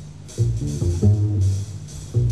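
Jazz trio of electric guitar, double bass and drums playing live. The bass and cymbals are quieter for the first half second, then a phrase of guitar notes comes in over the bass.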